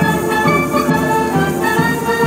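Lively Latin-style band music: a clarinet plays a quick melody over drums and percussion.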